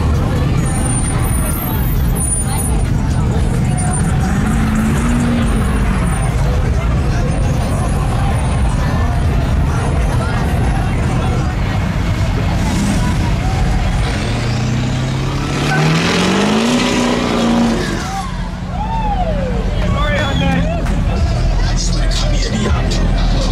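Lifted pickup trucks' engines running loud as they drive past, with one engine revving up in a steady rising pitch about two-thirds of the way through. Crowd voices in the background.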